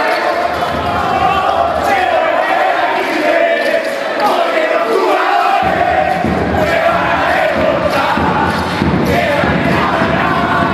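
A group of young basketball players shouting and chanting together in celebration of winning their championship, many voices at once. The sound changes abruptly a little past halfway.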